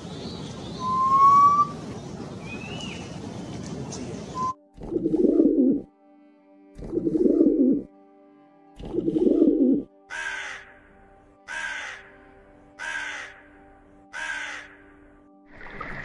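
A run of bird sounds: a few chirps and whistles over a noisy background for the first four and a half seconds. A common wood pigeon then gives three low coos, each about a second long, followed by four short harsh calls, evenly spaced and each falling in pitch. A steady background music drone runs under the later calls.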